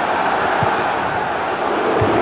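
Steady rushing outdoor background noise, even and without distinct events.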